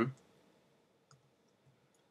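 Near silence after the end of a spoken word, with one faint click about a second in and a fainter one shortly after, from working at a computer.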